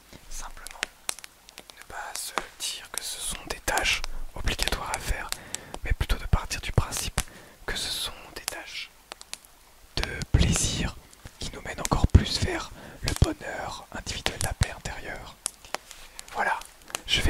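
A man whispering close to a pair of microphones, with many sharp clicks and rustles between the words from black leather gloves moved and rubbed right at the mics.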